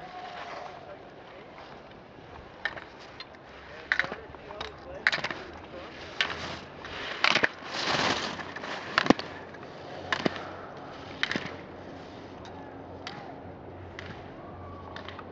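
Slalom skis scraping and carving on hard, icy snow, with sharp clacks about once a second as the racer knocks the slalom gate poles aside. The scraping is loudest about eight seconds in, as the skier passes close.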